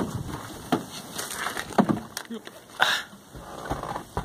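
Handling noise of someone opening a Datsun 720 pickup's door and climbing into the cab: scattered clicks, knocks and rustles, with a short hiss about three seconds in. The engine is not running.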